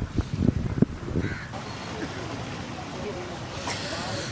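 Open street background: a few short voice sounds from the crowd in the first second, then a steady hum of outdoor noise.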